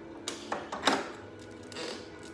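Handling noise from the plastic-wrapped power cord on the side of a dehumidifier: plastic crinkling and a few sharp clicks, the loudest just under a second in.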